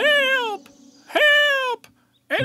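A cartoon character's voice calling out twice, two long high calls that each fall in pitch, as a lost dwarf shouts for help.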